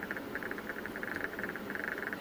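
Faint steady background buzz with no distinct sound event.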